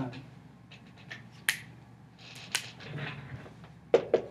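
Dry-erase marker writing on a whiteboard: a few sharp taps of the tip against the board, the loudest about a third of the way in and just past the middle, with a short scratchy stroke after the second.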